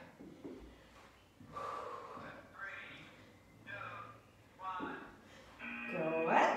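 A woman's short, breathy voiced exhalations, about one a second, as she works through crunches.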